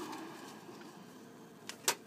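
Quiet room tone with a faint rustle of a folded paper slip being drawn from a small box and opened, and a sharp click near the end.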